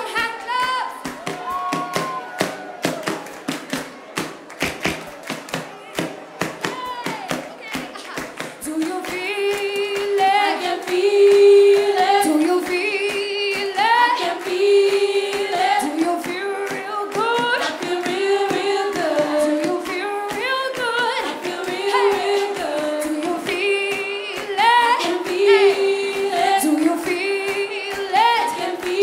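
Rhythmic handclaps and strokes on a hand-held mukorino frame drum beaten with a stick, with women's voices joining in harmony about nine seconds in and singing over the beat to the end.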